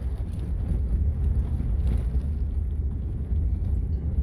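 Low, steady rumble of a log truck driving away along a dusty gravel road, mixed with wind buffeting a phone microphone, heard through video played back over a video call.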